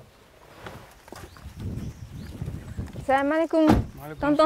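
Someone climbing out of a parked car onto a dirt track: a few soft footsteps and shuffles, then a car door shutting with a single heavy thump near the end.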